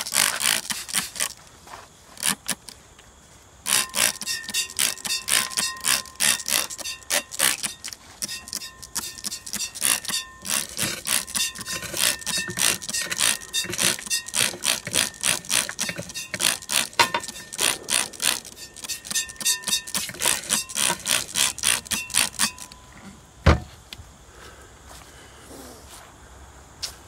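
Spray bottle squirting in rapid repeated pumps, about three a second, to rinse leftover gold-bearing acid solution out of a glass beaker. One low knock comes near the end.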